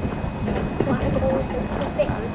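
Indistinct conversation of nearby spectators in the stands, with a few scattered knocks and clicks.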